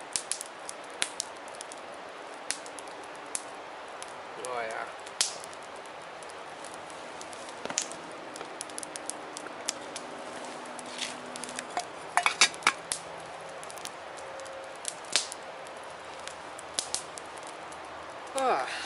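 Wood campfire crackling, with sharp pops scattered irregularly over a steady hiss. A cluster of louder knocks and clinks comes about twelve seconds in.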